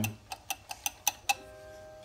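Sharp metallic clicks, about four a second and slowing, that stop about a second and a half in: the governor spring and throttle linkage on the carburetor of a 1960s International Harvester mower being flicked by hand, the spring prone to sticking. A few faint steady tones follow.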